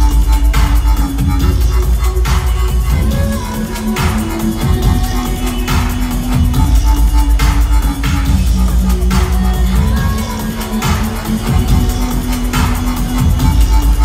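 Loud electronic dance music played by DJs over a club sound system and heard from the crowd: heavy sub-bass and a bass line that steps in pitch, with a sharp hit about every second and a half to two seconds.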